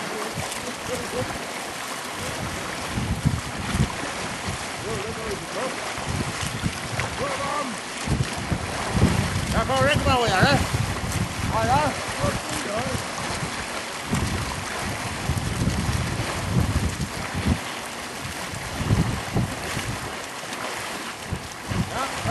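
Wind rumbling and buffeting on the microphone over open water, with shouting voices breaking through about halfway in.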